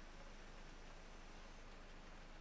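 Near silence: room tone, with a faint high-pitched whine that cuts off near the end.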